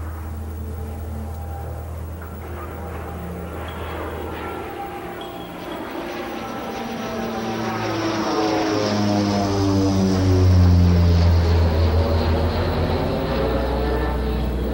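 Propeller airplane flying over: a steady engine drone that grows louder, peaks about ten seconds in, and drops in pitch as it passes.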